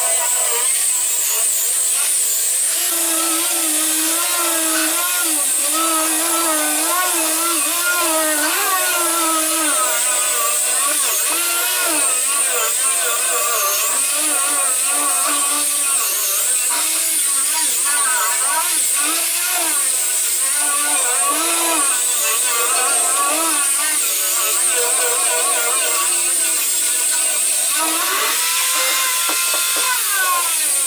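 Handheld angle grinder running continuously as it strips rust from a steel bus floor, its motor pitch wavering up and down as it is worked over the metal.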